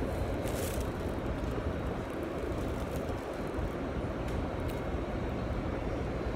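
Steady rumble and hiss of a rail transit car heard from inside the passenger cabin, with a few faint clicks.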